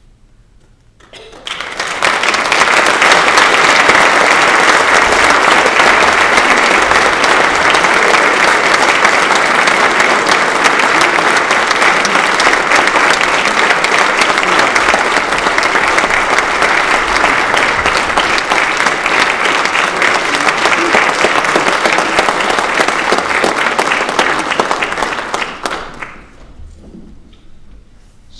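Audience applauding at the close of a talk: the clapping swells in about a second in, holds steady and loud for over twenty seconds, then dies away near the end.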